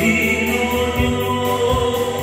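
A man singing into a microphone over a backing track with a steady beat, heard through a PA system.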